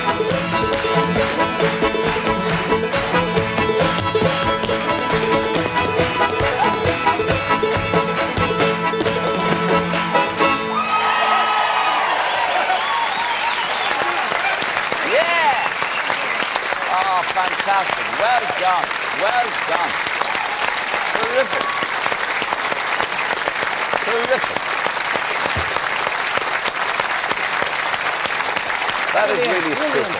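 A dancer's hard shoes beating rapid percussive steps over an up-tempo old-time string-band tune, which stops abruptly about ten seconds in. A studio audience then applauds and cheers, with whoops.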